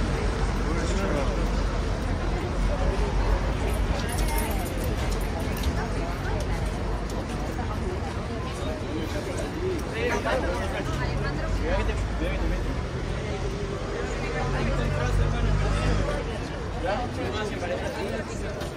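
Crowd chatter: several people's voices talking at once, none clearly, over a steady low rumble.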